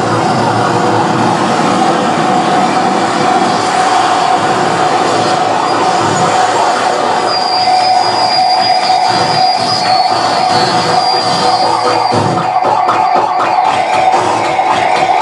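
Harsh noise electronics played live: a loud, dense wall of distorted noise with a steady pitched drone running through it. A thin, shrill tone comes in about seven seconds in and fades a few seconds later, and the texture turns choppier near the end.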